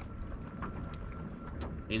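A low, steady rumble of wind on the microphone, with a few faint ticks.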